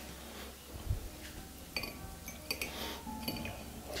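Metal fork clinking and scraping against a ceramic plate while spaghetti is twirled on it: about five light clinks with a short bright ring.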